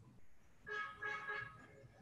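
Faint vehicle horn honking a few short, steady toots in quick succession, lasting under a second.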